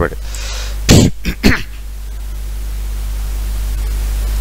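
A man clears his throat in two short bursts about a second in, after a soft breath, over a steady low hum.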